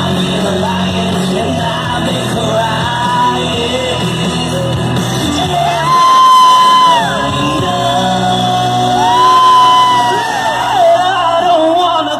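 A singer belting into a microphone over a loud pop backing track through a PA, heard live from the crowd. In the second half the bass thins out and the voice holds two long high notes.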